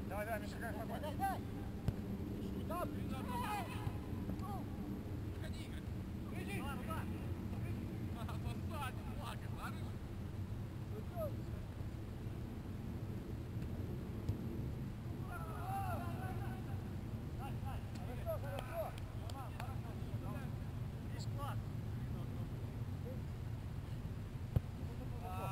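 Distant shouts and calls of soccer players on an open field, coming in short scattered bursts, over a steady low rumble. A couple of sharp knocks stand out, one about two seconds in and one a few seconds before the end.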